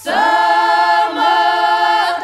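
A Ukrainian village women's choir singing traditional polyphonic folk song a cappella. The voices come in together on a new phrase right after a breath and hold long notes.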